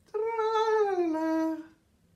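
A woman singing one long held note that slides down to a lower pitch about a second in, the last note of a sung jingle.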